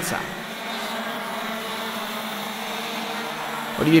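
Several X30 Senior racing karts' 125 cc two-stroke engines running at speed on track, heard together as a steady engine drone with several pitches.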